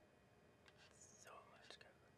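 Near silence, with faint breathy mouth sounds from the narrator between about one and two seconds in.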